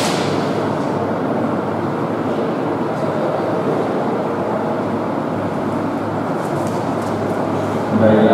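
Steady rushing background noise, even in level and without rise or fall, like a fan or air cooler running.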